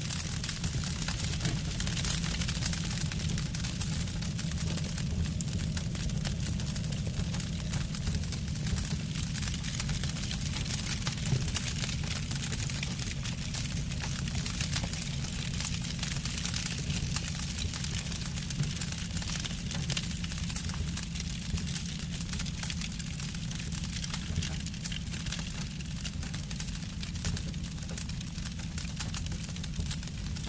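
Experimental noise track: a steady low rumble under a dense layer of hiss and fine crackling, with one sharper click about eleven seconds in.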